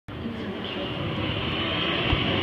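Loud amplified soundtrack of the light show playing over outdoor speakers: a dense, steady rumble that builds slightly and runs straight on into music.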